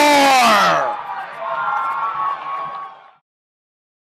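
A soccer commentator's drawn-out shout of "score!", held and falling in pitch, followed by cheering that cuts off suddenly about three seconds in.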